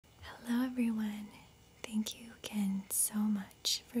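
A woman speaking in a soft-spoken voice close to the microphone: only speech.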